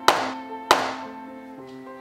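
A metal sheet pan of sponge cake batter knocked down onto a wooden counter twice, two sharp bangs with a short metallic ring about half a second apart, done to release air bubbles from the batter. Background music plays under it.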